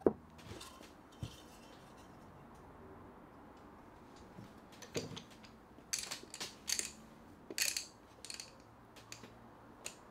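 A light knock as a wooden panel is set onto a glued box, then orange one-handed trigger bar clamps being squeezed on, their triggers ratcheting in several short bursts of clicks in the second half.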